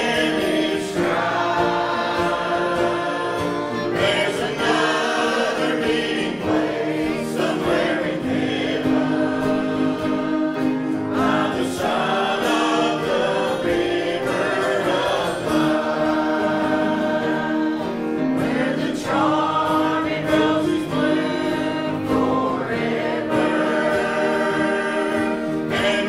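A group of voices singing a hymn together over sustained instrumental accompaniment, at a steady level.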